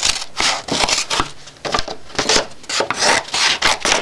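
Scissors cutting through manila file-folder card: a quick, irregular series of snips with the rustle of the card being handled.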